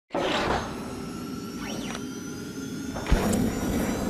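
Intro logo sting: synthesized whooshes over sustained electronic tones, with a gliding sweep in the middle and a sharp hit about three seconds in.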